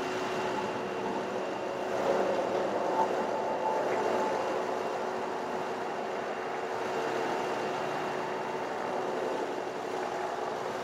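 Bucket truck's engine running steadily, a continuous hum with a faint steady whine over it, swelling slightly about two seconds in.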